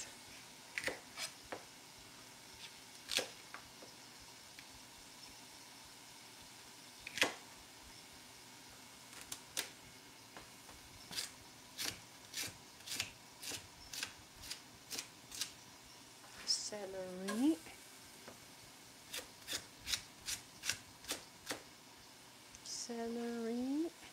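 Chef's knife cutting celery stalks on a plastic cutting board. A few separate cuts come first, then runs of even chops about two a second in the middle and again near the end.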